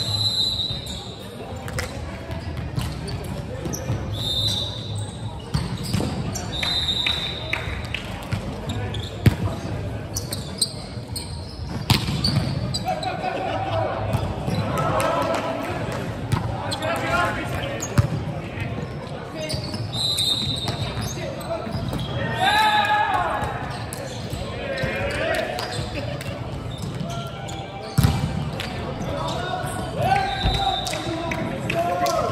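A volleyball rally on an indoor hardwood court. Sharp ball contacts ring out in the large hall, a few times across the stretch, with short high squeaks from shoes on the floor. Players call out, loudest in the middle and about three-quarters through.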